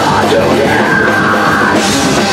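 A metal band playing loud live, with distorted guitars, drums and a vocalist yelling into the microphone.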